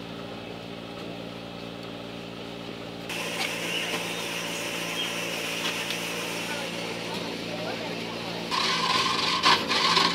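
An engine running steadily at idle, a low even hum, under the chatter of a crowd. Near the end a louder, rougher stretch with sharp clicks and clatter rises over it.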